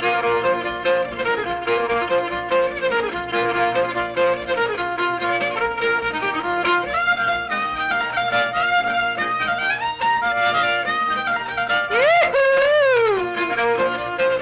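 Old-time fiddle tune played on a solo fiddle with guitar accompaniment, in a field recording: a steady run of fiddle notes, with a sliding note that rises and falls near the end.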